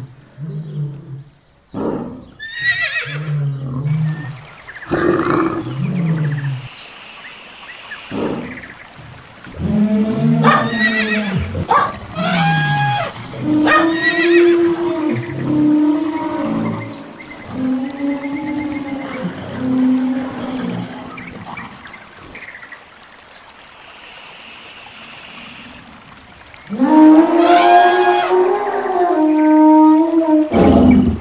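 A string of added animal call sound effects: short low calls in the first few seconds, then a run of repeated pitched calls about a second each, a quieter stretch, and a loud drawn-out call near the end.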